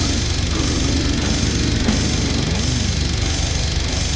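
Heavy metal music led by distorted electric guitar over a low bass line, with a low note sliding up and back down about two and a half seconds in.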